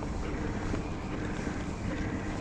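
Steady low hum of an Old Town ePDL 132 kayak's electric-assist pedal drive running, with some wind on the microphone.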